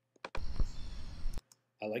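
A mouse click, then an outdoor field recording played back from Audacity: a low thump and rumble with faint bird chirps above it. It lasts about a second and starts and stops abruptly.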